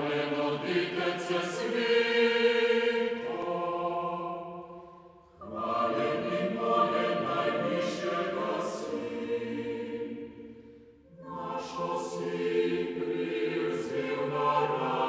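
Chamber choir singing an old Slovenian Christmas hymn in long, held phrases, with two short breaks between phrases, about five and eleven seconds in.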